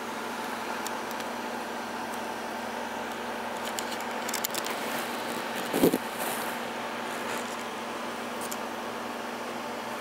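A steady low hum over an even background noise, with a brief knock about six seconds in.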